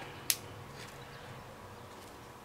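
Quiet room tone with a faint steady hum, broken by one short, soft tick about a third of a second in.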